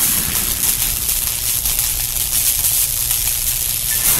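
A steady, fairly loud hiss-like noise, spread evenly from low to high pitches with no tune or voice in it.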